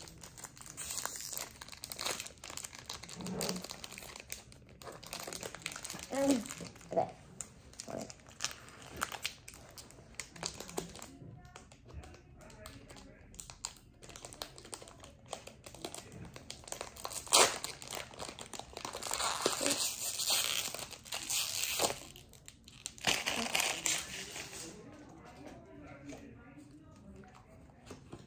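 Foil wrapper of a Pokémon TCG Fusion Strike booster pack crinkling in the hands and being torn open, with irregular rustles and crackles. A louder stretch of crinkling comes about two-thirds of the way in, and softer handling follows near the end.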